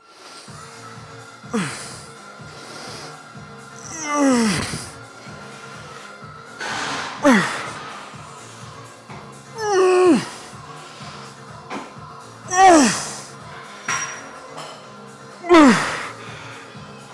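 A man's effort groans and hard exhales, one on each rep of a cable tricep rope extension. Each one slides down in pitch, about every three seconds, over steady background music.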